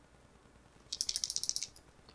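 A Sephora liquid eyeliner pen being shaken, giving a quick run of about a dozen rattling clicks in under a second, about a second in; the pen is drying up and the shaking is to get the ink flowing.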